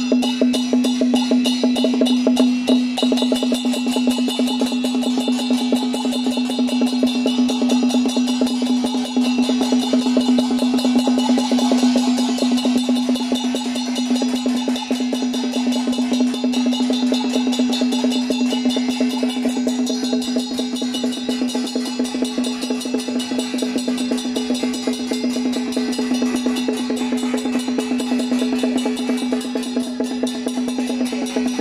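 Traditional temple-procession percussion accompaniment: fast, even drum strokes and wood-block clacks that keep going without a break, over a steady held tone.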